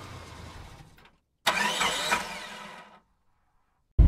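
Intro sound effect of a car engine revving, in two bursts: the first dies away about a second in, and the second starts suddenly a moment later with pitch glides, then fades out.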